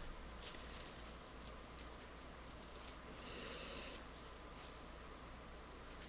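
Faint rustling and a few light taps of a plastic garbage-bag kite and wool yarn being handled while a knot is tied at its crossed wooden sticks.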